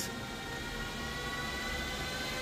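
Steady whirring of the running Antminer S21 Bitcoin miner's cooling fans, with a faint high whine held at one pitch.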